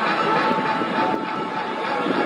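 Steady ballpark crowd hubbub in a stadium before a game, with a couple of faint sharp pops from baseballs being caught during a game of catch.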